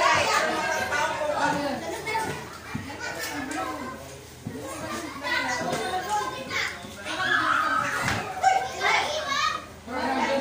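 Children's voices and chatter mixed with adults talking in a room, with overlapping calls and exclamations and a louder cluster of voices about three-quarters of the way through.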